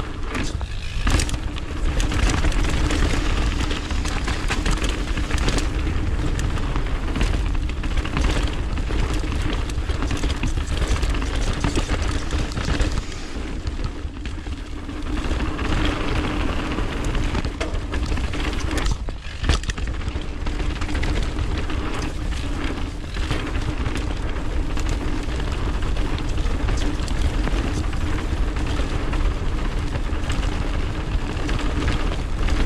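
Mountain bike rolling fast down a hard-packed dirt trail, heard from a camera on the rider. Wind buffets the microphone with a steady low rumble under the tyre noise, and frequent short knocks and rattles come as the bike goes over bumps.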